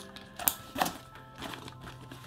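Backpack fabric being handled as a side pocket is tucked away inside the bag, with two sharp rustles about half a second and just under a second in, over background music.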